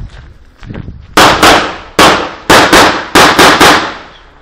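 Eight handgun shots in rapid strings, starting just over a second in: a pair, a single, another pair and a run of three, each shot about a quarter second apart within its string, each with a short echoing tail.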